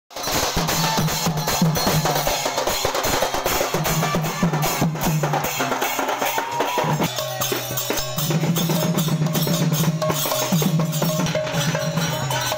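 A group of drums played with sticks in a fast, dense processional rhythm, over a steady low drone; a higher held tone comes and goes from about halfway through.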